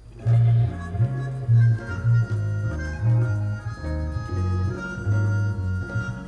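Live band music starting about a quarter second in: a deep bass line moving between notes under long, sustained melody notes.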